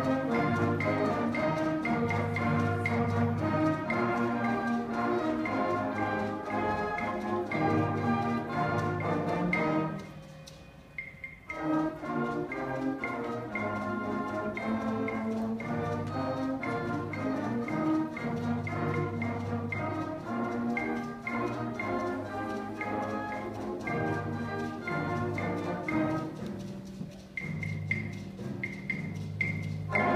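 Middle school concert band playing: woodwinds and brass holding sustained chords with percussion. The music drops away briefly about ten seconds in before the full band comes back, and near the end thins out to lighter playing with a few repeated high ringing notes.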